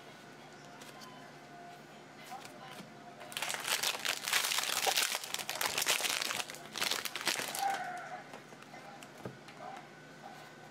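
Foil trading-card pack wrapper torn open and crinkled by hand, from about three seconds in until nearly eight seconds.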